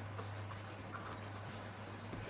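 Faint rubbing and rustling of fingertips on paper as a sticker is positioned and pressed onto a planner page, over a low steady hum.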